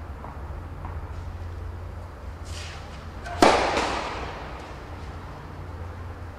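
A tennis ball bouncing faintly a couple of times on a clay court, then struck hard with a racket on the serve about three and a half seconds in, a single sharp crack that is the loudest sound and rings on for about a second in the indoor hall.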